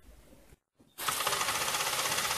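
Small alcohol-fired model steam engine starting to run: its piston and flywheel set up a rapid, even mechanical clatter about a second in.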